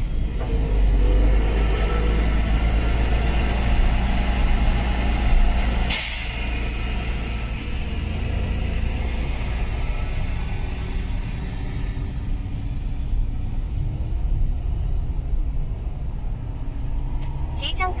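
Steady low road and engine rumble inside a car's cabin while driving in traffic, with one short sharp click about six seconds in.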